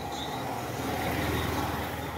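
Motor vehicle engine noise, growing louder toward the middle and then easing a little.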